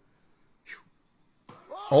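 Mostly quiet, with a brief hiss a little under a second in and a click at about one and a half seconds. Near the end a loud human scream breaks in, its pitch rising and then falling.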